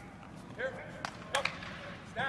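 Two sharp hand claps, a little after a second in and about a third of a second apart, in a large indoor practice hall, with a brief shout from a voice before them.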